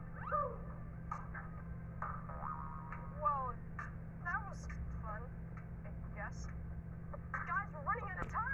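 A TV programme's soundtrack picked up from the set's speaker: music over a steady low hum, with short swooping pitch glides. One glide comes just after the start, a run follows a few seconds in, and more bunch up near the end.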